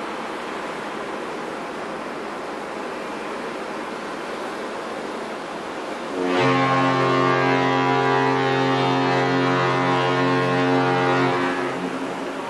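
Steady rushing noise, then about six seconds in the Carnival Pride cruise ship's fog horn sounds one long, deep blast rich in overtones. The blast holds steady for about five seconds before cutting off.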